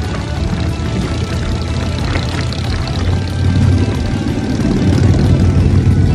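Low rumble of a Harley-Davidson motorcycle being ridden, engine and rushing air together, swelling louder about halfway through and again near the end, with background music laid over it.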